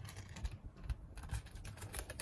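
Fingers tapping and scratching on a plastic-wrapped cardboard iPad Air box, a run of light, irregular taps.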